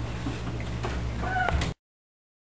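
Short high-pitched, meow-like calls over a steady electrical hum, the clearest one rising about one and a half seconds in; the sound cuts off suddenly near the end.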